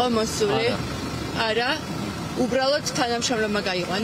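People talking in Georgian, with a short lull a little after the first second, over a steady low rumble.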